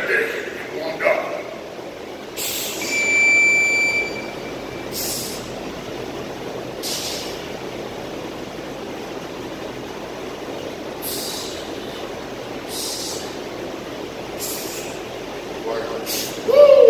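Short hissing breaths, about six of them a couple of seconds apart, from a man squatting with a barbell, over a steady background hum; a brief voice sound comes in the first second.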